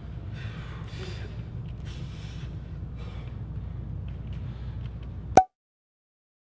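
Short, forceful breaths, noisy exhalations and intakes, from bodybuilders tensing into a pose, over a steady low room hum. Near the end a single sharp click, the loudest sound, and then the sound cuts off abruptly to silence.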